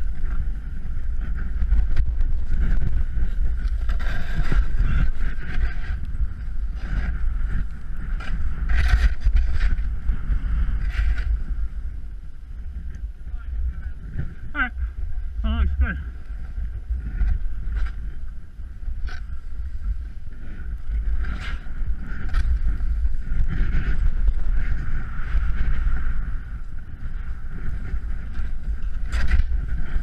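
Wind buffeting the microphone of a snowboarder's action camera, a steady low rumble, over the hiss and scrape of the snowboard sliding and carving through snow.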